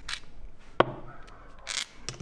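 Small metal parts handled by hand: a threaded stud and its nut give one sharp metallic click a little under a second in, with a brief hiss near the end.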